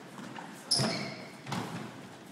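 Squash ball being struck: a sharp, loud crack a third of the way in, then a softer hit of the ball on a wall or the floor near the end, echoing in the enclosed court.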